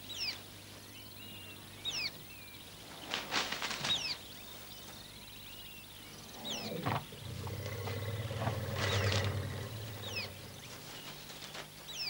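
African elephant giving a low, rough, pulsing rumble for about three seconds in the second half. Around it are the crackle and rustle of shrubs being pushed through and short, falling bird chirps.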